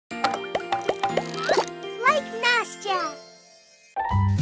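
Playful children's intro jingle: short plucked notes and springy upward glides with a child's voice, dying away in the last half second.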